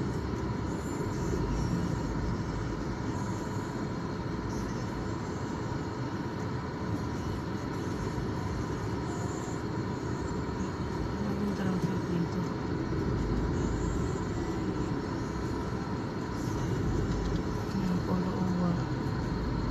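Steady rumble of a car's engine and tyres heard from inside the cabin as it moves slowly, with faint voices now and then.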